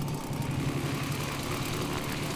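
Radio-controlled model airplane engine idling steadily while the model is held on the ground.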